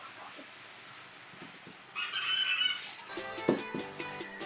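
A rooster crows once, briefly, about halfway through over a quiet background; background music comes back in near the end.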